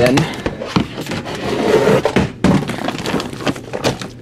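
Black Sterilite plastic storage bin being opened: its plastic lid and latches clack, then the packed contents rustle and knock as they are rummaged through, with several sharp plastic knocks.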